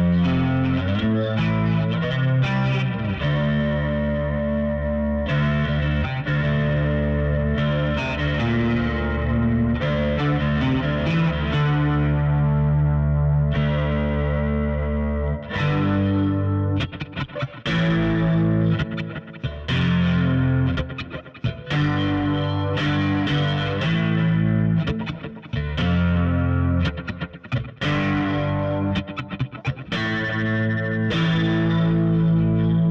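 Squier Jazz Bass with an aluminium Baguley neck and a T-Bird-style bridge pickup, played through an amp with a clean tone. Long held notes come first, then shorter, choppier notes with brief gaps from about halfway through.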